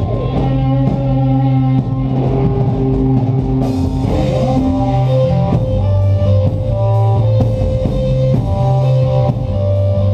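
A rock band playing live on amplified electric guitars and electric bass over a drum kit, the guitars holding sustained chords. The cymbals come in louder about three and a half seconds in.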